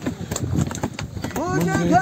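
A hand drum struck in quick, hollow strokes, then a man's singing voice comes in about one and a half seconds in.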